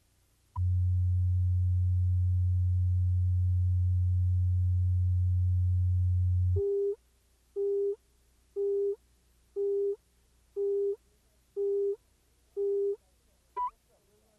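Videotape leader tones: a steady low reference tone for about six seconds, then short countdown beeps, seven of them one a second, and a brief higher pip just before the programme starts.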